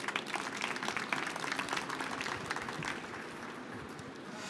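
Small seated audience applauding, a dense patter of hand claps that thins out after about three seconds.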